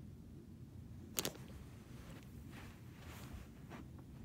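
A single sharp click about a second in, followed by a few fainter rustles, over a low steady room hum.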